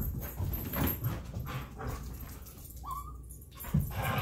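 Dogs roughhousing on carpet: scuffling and scrambling paws, with one short rising whine about three seconds in and a thump just before the end.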